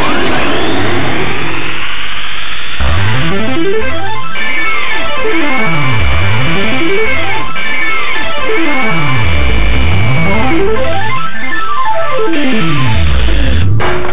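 CR Osomatsu-kun pachinko machine's electronic effect sounds during a display animation: runs of synthesized tones stepping down the scale and back up, repeating every few seconds over a dense, jangling din.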